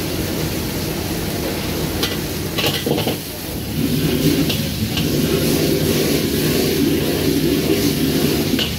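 A wok worked with a metal ladle over a high-flame gas wok burner: steady burner rush with frying sizzle, and a few sharp clinks of the ladle on the wok. About four seconds in, a louder, deeper rush sets in as the wok is tossed over the flame.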